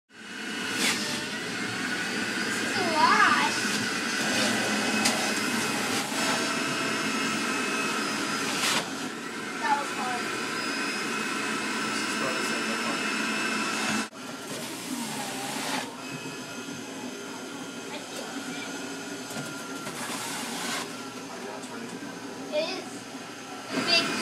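Electric juicer motor running with a steady whine, with voices talking over it. The sound cuts out briefly about halfway, then carries on.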